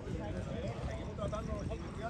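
Indistinct talking among people standing around a racehorse, over an irregular low rumbling noise.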